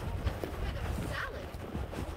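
A horse walking on a trail, its hooves giving a few soft knocks, over a steady low rumble of the phone jostling against the microphone in the rider's pack.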